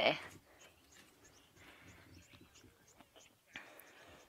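Quiet bush ambience with faint, short high chirps from a small bird, repeated a few times a second.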